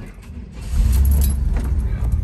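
1972 Chevrolet El Camino's 350 V8 engine starting up about half a second in and then running steadily, a deep low-pitched engine sound heard from inside the cab.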